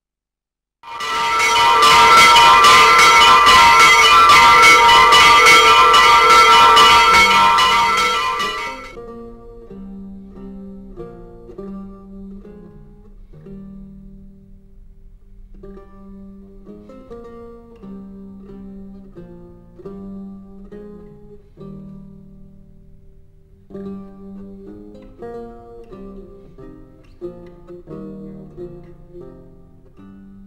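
Loud ringing of bells for about eight seconds, with many overlapping tones, cutting off suddenly. It is followed by quiet plucked-string music picking out a slow melody.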